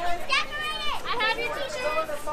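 Children's high-pitched voices talking and calling out, overlapping one another.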